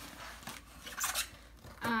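Scissors cutting through packing tape on a cardboard box, with a brief louder rasp about a second in.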